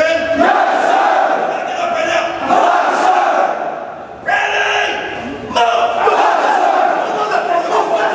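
Many men's voices shouting at once, recruits yelling in unison over drill instructors bellowing commands. The din eases briefly about four seconds in, then bursts out again loudly.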